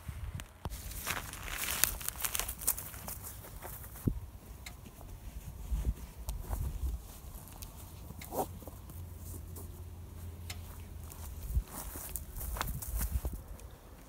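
Outdoor ambience with a low wind rumble on the microphone, scattered soft footsteps and handling clicks, and one short call about eight seconds in.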